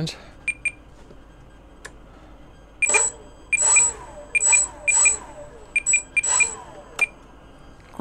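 Small electric motors in a ParkZone S.E.5a RC plane whirring in a series of short bursts as the controls are worked from the transmitter. Each burst carries a high steady whine and a pitch that falls away as it stops. Two faint short blips come about half a second in.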